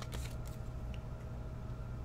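Faint plastic rustle and light clicks of a trading card being handled in a clear plastic sleeve and holder, over a low steady hum.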